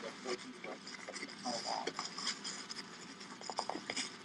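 Handcuffs ratcheting shut: a quick run of sharp metal clicks near the end, amid clothing rustle from a pat-down.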